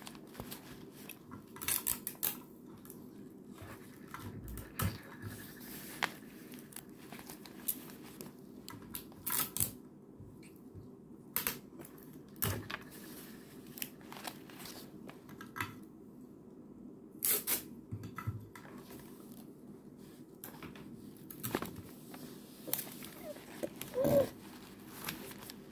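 Paper pages of a notebook being handled and turned: scattered short rustles and crisp clicks every second or two, over a steady low hum.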